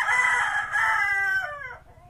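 A single long, loud animal call with many overtones, held for nearly two seconds and falling in pitch near the end.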